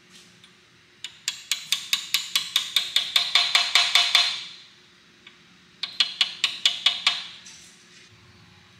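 Ratcheting screwdriver clicking rapidly, about five or six clicks a second, as it drives a screw into the front of an engine block. There are two runs of clicks: a long one of about three seconds, then a shorter one of about a second and a half.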